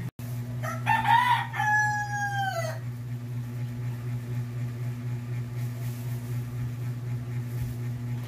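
A rooster crowing once, a call about two seconds long that falls in pitch at its end, over a steady low hum.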